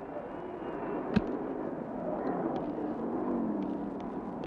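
Street traffic noise with a motor scooter's engine running as it passes, its pitch sinking slowly. There is one sharp click about a second in.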